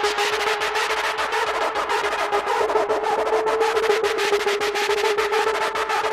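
Early hardcore electronic track in a breakdown without the kick drum: rapid, evenly spaced percussion hits run over one held synth tone.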